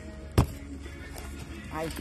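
One sharp knock about half a second in as a small cardboard storage box is handled, over steady background music. A voice starts near the end.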